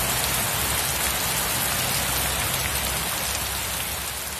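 Heavy rain falling in a steady, even downpour.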